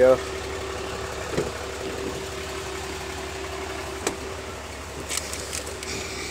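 Cummins 6.7-litre inline-six turbo diesel of a 2018 Ram 3500 dually idling steadily, with a few light clicks, most of them near the end.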